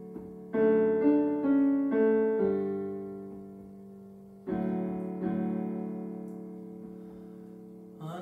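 Casio Privia digital piano playing slow chords: several in quick succession over the first two and a half seconds, then a fresh chord about halfway through that is left to ring and fade.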